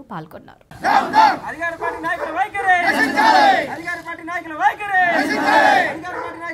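A crowd of protesters shouting slogans together, starting about a second in after a brief pause and going on in loud, repeated shouts.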